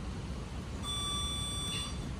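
An electronic beep: one steady high-pitched tone held for about a second, starting a little before a second in, over a steady low hum.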